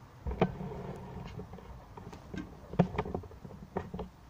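Handling noise from a camera being picked up and turned: a low rumble with a few sharp knocks, three of them standing out.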